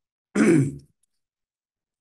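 A man clears his throat once, a short voiced rasp about a third of a second in that lasts about half a second.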